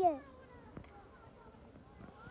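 A small child's high-pitched voice gliding downward and trailing off at the very start, then only faint background with a single soft click a little under a second in.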